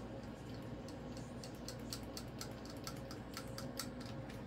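A Moluccan cockatoo's beak clicking and nibbling on a small hard plastic toy: faint, irregular little clicks, several a second, coming thicker after the first second.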